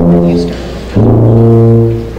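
Tuba playing two held low notes: a short one, then a lower one held for about a second.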